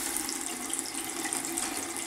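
Water running steadily from a bathroom tap, a thin stream splashing into the washbasin near the drain.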